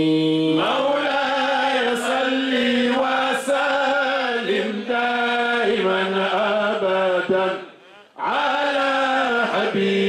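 A man chanting a Muslim devotional song through a microphone, drawing out long, wavering held notes. He breaks off briefly for breath about eight seconds in, then carries on.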